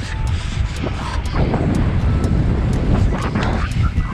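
Wind buffeting the microphone of a camera carried on a moving bicycle, a loud, steady low rumbling rush.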